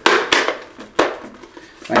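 Hard plastic shell of a toy Iron Man helmet clacking as it is handled: two sharp knocks about a second apart, with a smaller click between them.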